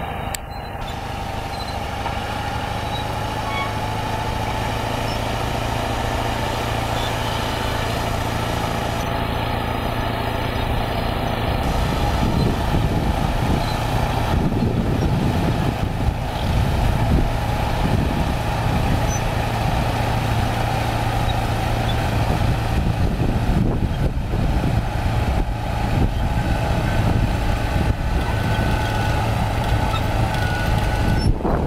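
Chetra T-20.01Ya crawler bulldozer's diesel engine running steadily as the machine pushes topsoil with its blade. From about twelve seconds in, the engine gets louder, with a heavier low rumble.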